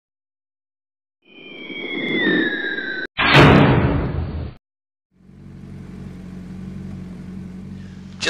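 A whoosh swells from about a second in, with two tones sliding apart, one rising and one falling. About three seconds in it is cut off by a louder short burst that stops suddenly. After a brief silence, the 2006 Kawasaki Ninja ZX-10R's inline-four engine idles steadily from about five seconds in.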